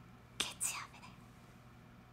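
Two short breathy, whispered sounds from a young woman, about half a second in. The rest is quiet room tone with a faint steady low hum.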